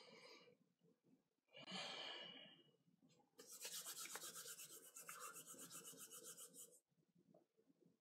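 Hands rubbed briskly together, faint: a short rub about a second and a half in, then a longer, fast, even back-and-forth rasp of palm on palm lasting about three seconds.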